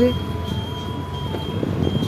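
Riding noise on a moving motor scooter: a steady low rumble of the small engine with wind and road noise on the microphone. A faint, thin high tone holds steady throughout.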